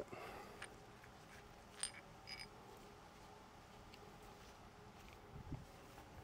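Near silence of room tone, broken by a few faint, brief clicks and taps of small parts being handled: one near the start, a sharper click after about two seconds with a double click just after it, and a soft knock near the end.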